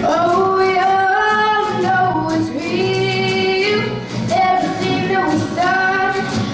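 A female vocalist singing a blues song live in long held notes, accompanied by a group of strummed acoustic guitars.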